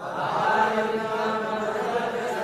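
A congregation chanting a Sanskrit verse together in unison, many voices blended into one steady chant.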